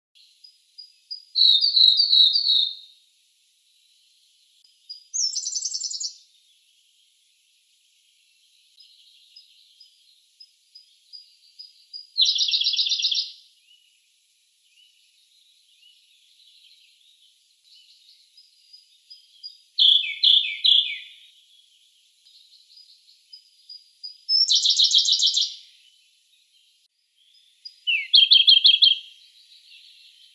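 Siberian blue robin singing: six short, fast trilled phrases, each about a second long and a few seconds apart, with faint thin high notes between them.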